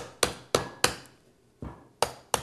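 A chef's knife chopping into the husk of a young coconut: a quick run of about three blows a second through the first second, then a pause and one softer blow near the end.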